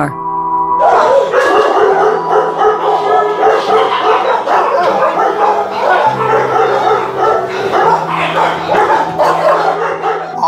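Many dogs in a puppy mill kennel barking at once in a dense, overlapping chorus that starts about a second in, over background music with low held notes.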